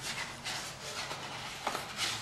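Sheet of thick paper rustling and rubbing as it is handled, folded and creased by hand, with a light tap about three-quarters of the way through.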